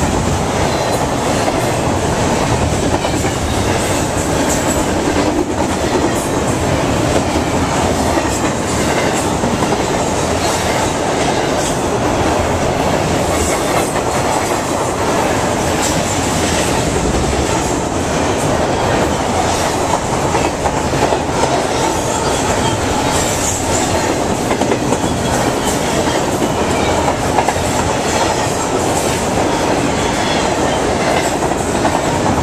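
Double-stack container well cars rolling past: a steady, loud rumble and clatter of steel wheels on the rails, with many sharp clicks scattered through it.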